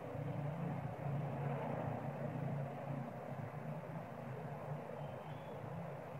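Steady low rumble with a hiss over it, like distant traffic or wind, with no distinct events.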